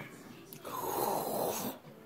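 A person's long, breathy sigh lasting about a second, starting about half a second in.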